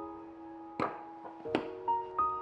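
Two sharp metallic knocks, about a second in and again a little over half a second later, as a metal springform pan is set down on a metal rod trivet, over soft piano background music.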